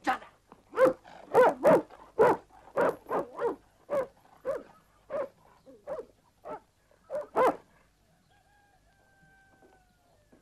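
A dog barking repeatedly, a run of short barks about two a second that stops about three-quarters of the way through.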